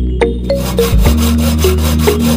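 Hacksaw blade sawing through a plastic pipe in quick back-and-forth strokes, starting about half a second in, with background music underneath.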